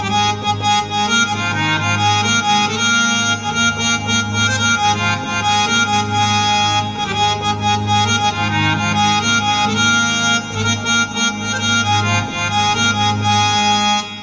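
Roland XPS-30 synthesizer playing its "Harmonium 1" reed-organ tone with both hands: a melody over steadily held low notes.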